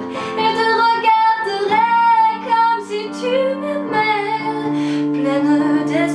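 A woman singing a French love song with long held notes that slide in pitch, accompanying herself on a digital piano keyboard playing sustained chords.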